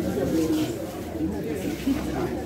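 Mourners' voices: drawn-out, wavering crying and wailing with no clear words.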